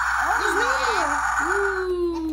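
A child's wordless voice sliding up and down, then holding one long, slowly falling note, over a steady noise that stops shortly before the end.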